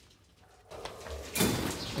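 A coil of steel rebar rods scraping and rattling against each other as it is lifted off a concrete floor. It starts about a second and a half in, after a brief near-silence.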